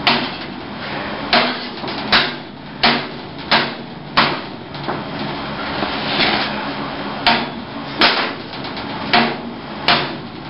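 Hammer blows, a series of sharp strikes about one every three-quarters of a second, with a pause of a few seconds in the middle before they resume.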